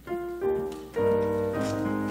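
Piano playing the introduction to a hymn: a couple of single notes, then full chords with a bass line from about a second in.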